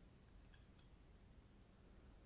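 Near silence: room tone with a couple of faint plastic clicks in the first second, from turning the knob on the back of a small Lego brick monster that rotates its eye.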